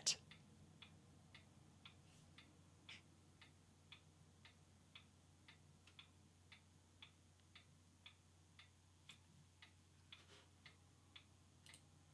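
Near silence with faint, evenly spaced ticks, about two a second, steady throughout.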